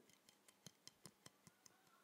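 Near silence: room tone with faint, fast ticking, about four or five ticks a second.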